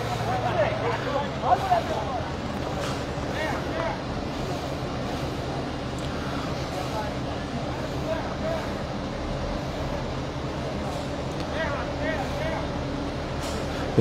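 A fire engine's engine running steadily with a low hum, and faint voices now and then.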